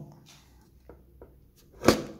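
Handling noises: two faint clicks, then one sharp knock shortly before the end.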